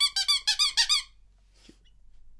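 A hand-held bulb horn squeezed rapidly about seven times in the first second, giving quick squeaky honks as a comic applause cue.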